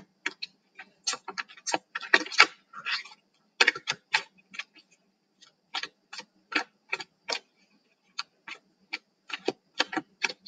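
Tarot cards being shuffled and handled: a string of short, sharp clicks and snaps, mostly irregular, with an even run of about two a second past the middle.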